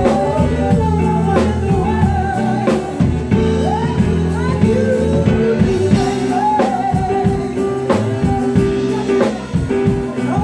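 A woman sings lead with a live band: a wavering, held vocal line over a drum kit keeping a steady beat and sustained electric bass notes.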